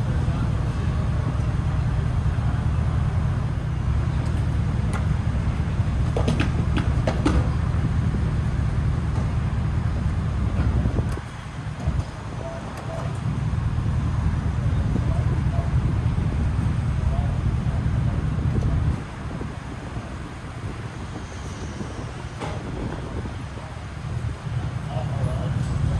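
A steady low mechanical hum, cutting out about eleven seconds in, coming back a couple of seconds later and stopping again near nineteen seconds. A few sharp clicks come around six to seven seconds.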